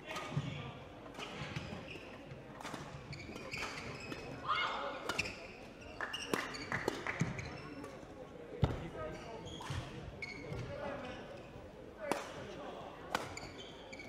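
Badminton rally: racket strikes on a shuttlecock as sharp, separate knocks roughly every second, the loudest about two-thirds of the way through, mixed with players' footwork on the court floor.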